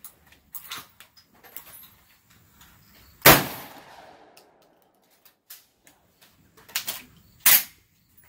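A Mossberg pump-action shotgun fired close by, one loud blast about three seconds in that echoes away over about a second. Small clacks come before and after it, and two more sharp cracks come near the end, the second of them loud.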